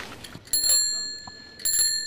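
A chrome bicycle bell rung twice, about a second apart, each ring dying away slowly.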